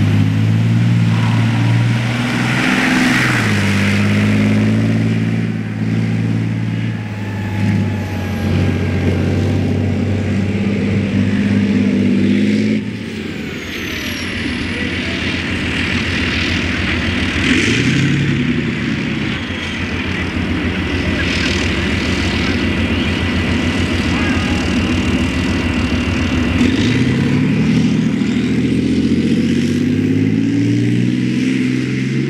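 Leopard 2A6A3 main battle tank's V12 diesel engine running under load as the tank drives through mud. Its pitch rises and falls with the throttle and climbs near the end as it accelerates. Track clatter runs underneath.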